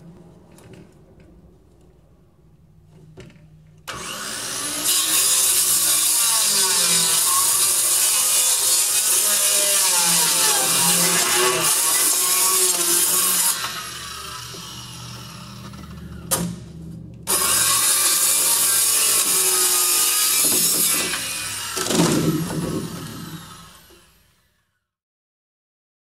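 Handheld corded circular saw cutting a sheet of plywood. About four seconds in it starts and makes a long, loud cut. It eases off for a few seconds, then makes a second loud cut and winds down to a stop near the end.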